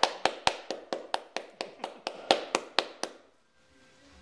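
A single person clapping in a quick, even rhythm of about four to five claps a second, stopping about three seconds in.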